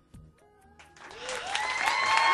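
The last notes of a song fade away, then audience applause swells up from about a second in, with a few voices calling out over it.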